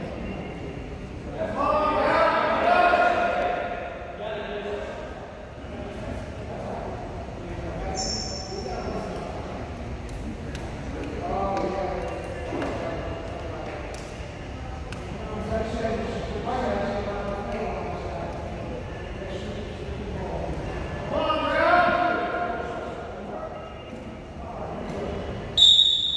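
Wordless shouts from coaches and spectators, each a second or two long and coming every few seconds, echoing in a gymnasium, with scattered thumps from wrestlers' feet on the mat. A brief high squeak comes about eight seconds in.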